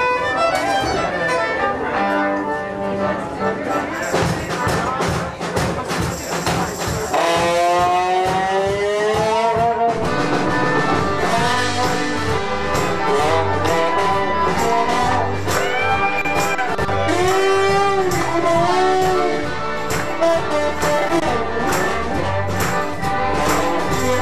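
Live band playing a tune with a steady beat on accordion, fiddle, electric bass and trombone, with a long upward slide in one instrument about seven seconds in.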